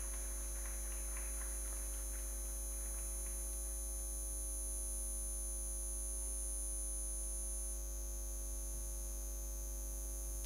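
Steady electrical mains hum from the sound system, with a few faint scattered claps in the first three seconds.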